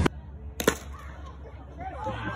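A sharp double crack of an impact a little over half a second in, over a faint low hum.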